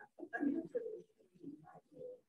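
A person's voice, faint and muffled, speaking in short broken phrases with the words unclear.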